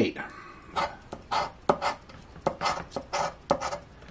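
A coin scraping the coating off a paper scratch-off lottery ticket in short, repeated strokes, about two or three a second.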